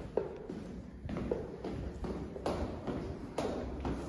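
Footsteps on a hard floor and steps: a string of separate short knocks, roughly one every half second to a second, as someone walks.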